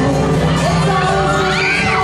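A crowd screaming and cheering over music, with high-pitched shrieks rising and falling near the end.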